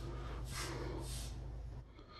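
A person's breath sounds close to the microphone, a few soft exhales, over a steady low hum that stops just before the end.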